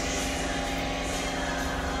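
Steady whirring hum of an electric fan running, with an even rush of air.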